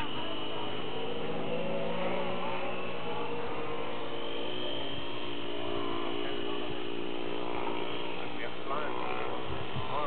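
RC model airplane motor droning steadily, its pitch wavering up and down as the plane flies overhead.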